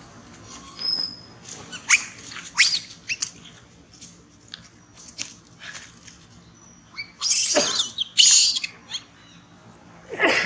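Long-tailed macaques calling: short high-pitched squeaks and chirps in the first few seconds, then two loud, harsh calls about seven and eight seconds in.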